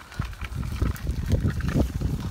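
Footsteps crunching on dry leaf litter and twigs while walking, with irregular low rumbling on the microphone.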